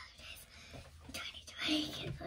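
Soft whispered speech, with a short, louder stretch of voice near the end.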